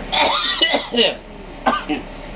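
A man coughing: a rough fit of about a second, then a shorter cough near the end, his throat irritated by the cayenne pepper he is mixing into ground sausage meat.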